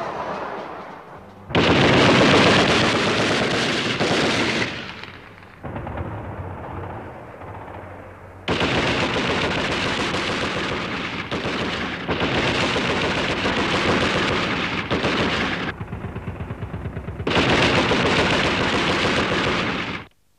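A jeep-mounted heavy machine gun firing rapid automatic fire in three long runs: about three seconds near the start, a longer run of about seven seconds in the middle, and a third near the end. Between the first two runs the firing drops to a quieter, more distant rattle.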